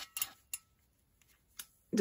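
A few light clicks and ticks as the wire loop of a doll stand is worked off a plastic Ken doll's waist, with three or four close together in the first half-second and one more about a second and a half in.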